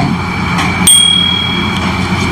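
A single high, bell-like ding about halfway through, one clear tone that holds for just under a second and then stops, over a steady background hum.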